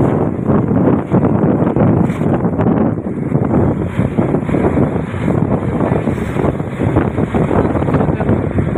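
Wind buffeting the microphone of a phone held in a moving vehicle, a loud gusty rumble with road noise under it.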